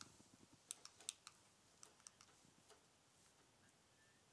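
Near silence, broken by a handful of faint, sharp, irregular clicks, most of them in the first three seconds.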